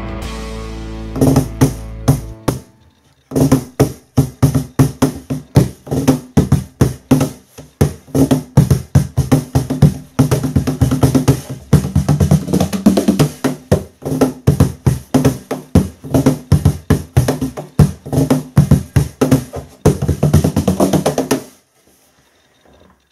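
Cajon played by hand: a quick, steady groove of deep bass strokes and sharper slaps on the wooden box that runs from about three seconds in until just before the end. It is preceded by a short intro jingle, a held chord that ends about two seconds in.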